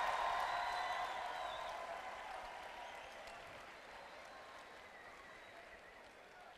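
Audience applauding after an applause line in a speech, the applause dying away gradually over several seconds.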